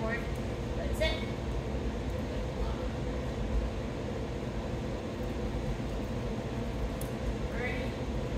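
A steady low mechanical hum runs throughout, with a few brief high-pitched vocal sounds: one right at the start, one about a second in and one near the end.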